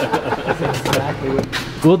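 Men's voices talking, with a low steady rumble underneath in the middle.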